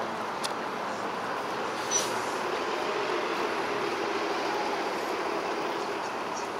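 An elevated subway train rumbling over the steel viaduct above a busy street, a low drone that swells through the middle, over steady traffic noise. A short sharp click about two seconds in.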